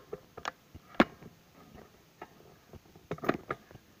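Scattered clicks and light knocks of the camera being handled and tilted, the sharpest about a second in and a short cluster near the end.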